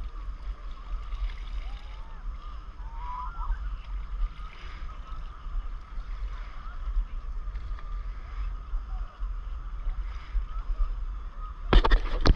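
Steady low wind rumble on the microphone over gently lapping sea water, with faint distant calls drifting through. A burst of sharp clicks comes near the end.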